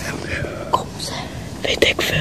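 Children whispering, with a few short breathy bursts near the end.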